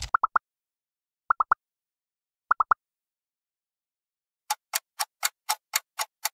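Quiz-game sound effects. First come three quick clusters of rising pops, each three blips in rapid succession and about a second apart, as the answer options pop onto the screen. Then, from about four and a half seconds in, a countdown timer ticks steadily, about four ticks a second.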